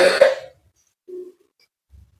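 A person coughing: one loud, harsh cough right at the start, lasting about half a second, then a brief faint throat sound about a second in.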